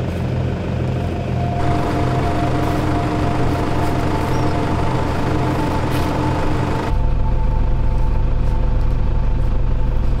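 A motor vehicle engine running steadily at idle, a low rumble with a steady hum. Its tone changes abruptly twice, about one and a half seconds in and again about seven seconds in.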